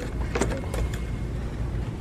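Steady low rumble of shop background noise, with a brief click or clatter about half a second in.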